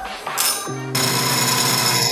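Background music with low sustained notes. About a second in, a loud steady hiss joins it, from an electric coffee grinder milling beans.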